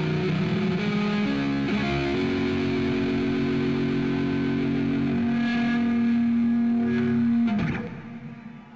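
Electric guitar playing slow, sustained notes. One note is held for about five seconds, then slides down in pitch and cuts off near the end.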